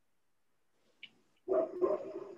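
A dog barking, starting about one and a half seconds in after near silence, with a faint click just before.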